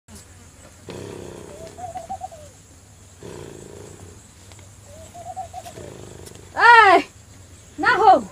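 A man snoring in slow, regular breaths about every two and a half seconds: a low rattling draw followed by a thin wavering whistle. Near the end come two much louder rising-and-falling cries.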